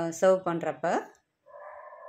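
A woman's voice speaking for about a second, then, after a short pause, a quieter steady sound starts about a second and a half in and keeps going.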